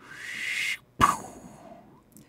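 A firework-rocket sound: a rising whoosh that swells for most of a second and cuts off, then a single sharp bang about a second in.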